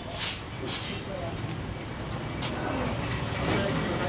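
Indistinct background voices over a low, steady mechanical rumble, with a few sharp knocks.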